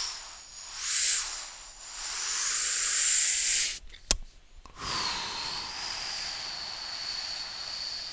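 Cartoon sound effects: whooshing hiss that swells twice, a sharp pop about four seconds in, then a long steady hiss of air escaping as the 'BONK!' lettering deflates.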